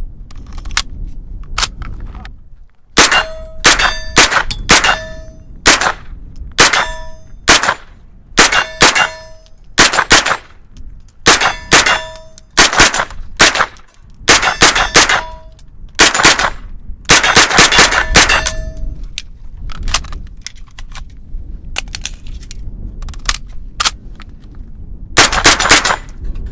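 Century Arms AP5 9mm roller-delayed semi-automatic carbine firing a long string of shots, often in quick pairs, with short pauses between strings. Many of the shots are followed by a brief metallic ring of steel targets being hit.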